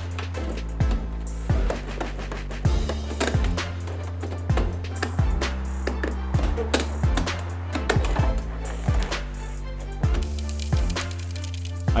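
Background music with a bass line and a steady beat.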